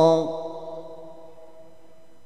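A Quran reciter's voice ends a long, wavering held note on the word 'kabira', dropping in pitch and stopping about a quarter second in. Its echo fades away over the next second, leaving faint steady background noise.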